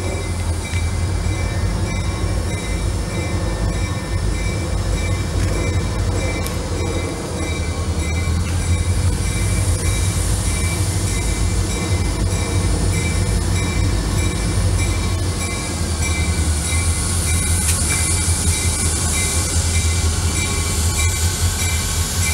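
Two EMD SD40-2 diesel-electric locomotives approaching slowly under power, their two-stroke V16 engines running with a deep steady drone that grows as they near. Thin steady high tones ring above the engine sound.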